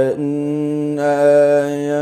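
A man's voice in melodic Quranic recitation (tilawat), holding one long, steady vowel after a brief break at the start.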